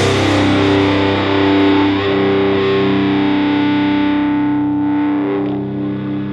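Distorted electric guitar chord with effects held and ringing out at the end of a rock song, its brightness slowly fading away.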